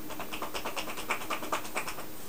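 Rapid rhythmic tapping strikes of a masseur's hands on the body, about eight to ten a second: tapotement, the percussive strokes of a massage.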